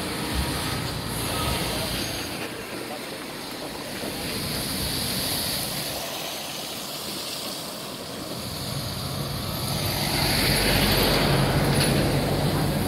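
Traffic noise from heavy lorries running on the highway, with a diesel truck engine's low hum growing louder over the last few seconds. Indistinct voices are heard alongside.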